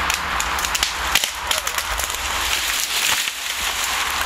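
A small tree coming down after being cut with a chainsaw: a run of cracking and snapping as its branches break through the undergrowth. The chainsaw's engine runs low underneath.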